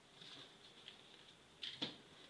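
Faint handling noise of a hand moving drafting tools over pattern paper, with a tiny click about a second in and two brief soft rustles near the end.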